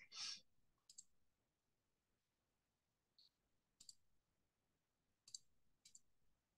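Near silence broken by about four faint, separate clicks from a computer mouse.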